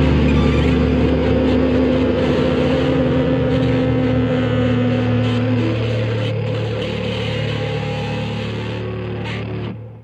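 Electric bass letting a final chord ring: several sustained low notes, struck just before, die away slowly. One upper note stops about halfway, and the rest is cut off shortly before the end.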